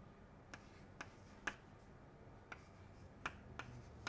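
Chalk tapping and clicking on a blackboard as digits are written: about seven short, sharp clicks at irregular intervals over quiet room tone.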